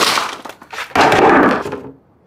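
Paper cards, envelopes and a cardboard box being handled: two loud, sudden noisy bursts, one at the start and one about a second in, each fading away over about half a second.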